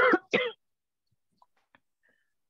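A person clearing their throat in two short bursts, followed by quiet broken only by a few faint clicks.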